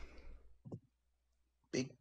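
A mostly quiet pause in a conversation, broken by one faint, short click about two-thirds of a second in; near the end a man's voice starts speaking.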